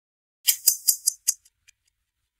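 Quiz countdown sound effect: a quick run of clock-like ticks, about five a second, with a brief high hiss over the first few, fading out within about a second and a half.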